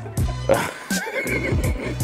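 Background music with a steady bass beat. About a second in comes a brief high, wavering cry.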